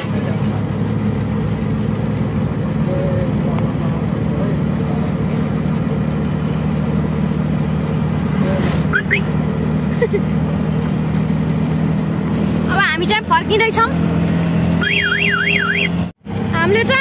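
Auto-rickshaw engine running steadily as it drives along, heard from inside the passenger cabin. A warbling electronic tone sounds briefly near the end.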